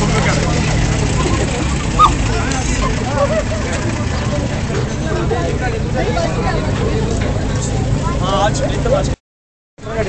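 Vintage car engine running at idle close by, under the steady chatter of a crowd. The engine's hum is clearest in the first second or so, and the sound breaks off abruptly about nine seconds in.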